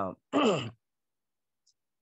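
A man's voice: the end of a word, then a short drawn-out "ah" falling in pitch.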